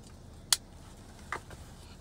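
Child car seat harness buckles clicking shut: one sharp plastic click about half a second in, then a softer click a little before the end.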